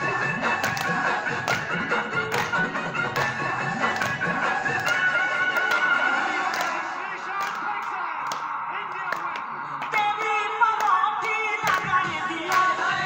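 Jaunsari folk song music: held melodic lines over a loose beat of sharp percussive strikes, with singing voices coming in about ten seconds in.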